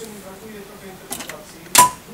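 A quiet, low voice humming or murmuring, then a few light clicks and one sharp knock with a brief ringing tone near the end.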